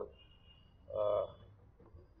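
A man's voice making one short, held hesitation sound, 'aa', about a second in, as he pauses mid-sentence.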